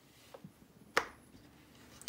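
One sharp click about a second in, with a few faint taps around it, as parts of a metal street-light fitting are handled.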